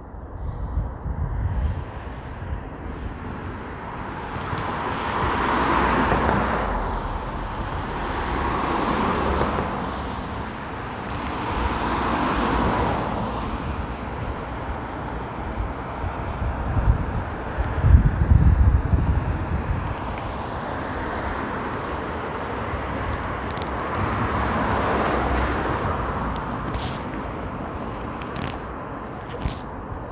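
Cars passing one by one on the bridge roadway, each a rush of tyre and engine noise that swells and fades, about four passes over a steady city traffic background, on a damp road surface. A low rumble rises and falls about halfway through.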